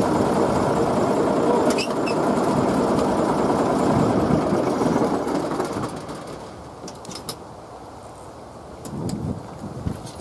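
A heavy construction machine's engine running steadily, then shut off about five to six seconds in and running down to quiet. A few light knocks follow near the end.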